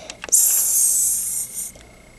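A high, even hiss lasting about a second and a half, a sizzle for the patty cooking on the grill.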